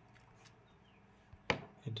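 A single short, sharp click about one and a half seconds in, against quiet room tone.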